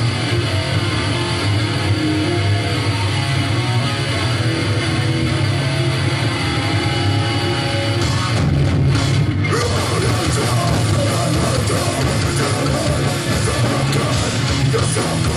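Hardcore punk band playing live: distorted electric guitar, bass and drums, loud and dense. The sound briefly thins out at the top about eight and a half seconds in, then carries on.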